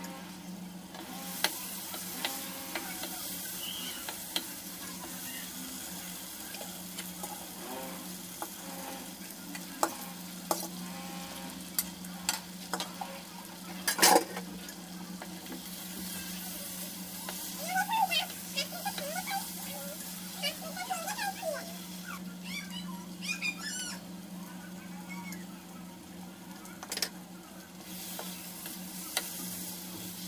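Chicken and potato curry sizzling in a non-stick pan while a wooden spatula stirs and scrapes through it, with scattered clicks of the spatula against the pan. A louder clatter comes about halfway through.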